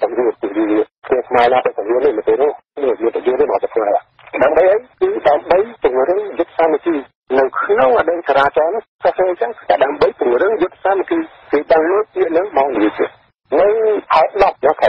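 Speech only: continuous talk from a Khmer-language radio news broadcast, with a thin, band-limited sound like a radio or phone line.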